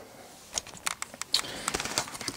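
Handling noise: a scatter of light clicks and taps beginning about half a second in and coming faster near the end.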